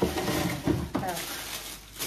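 Kraft honeycomb packing paper and tissue paper rustling and crinkling as an item is unwrapped, with several sharper crackles.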